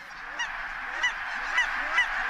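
A large flock of geese honking: a dense chorus of calls with single louder honks standing out about every half second, growing louder.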